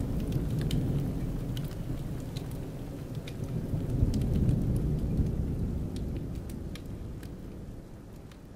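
A low, steady rumble with scattered faint ticks, slowly fading out.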